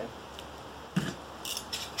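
A soft knock about a second in, then a quick run of sharp clicks near the end from a snap-off utility knife's blade slider as the blade is pushed out.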